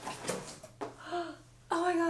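A woman's voice: a short sound about halfway through and a louder, longer one near the end, with a faint knock of cardboard being handled early on.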